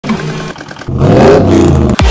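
A car engine revving loudly, starting about a second in after a quieter opening.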